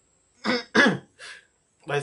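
A man clearing his throat with short coughs into his hand: three quick bursts about half a second to a second and a half in, the middle one the loudest.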